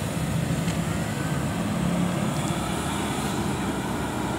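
Diesel engine of a Mercedes-Benz-chassis coach running with a steady low hum as the bus moves off slowly.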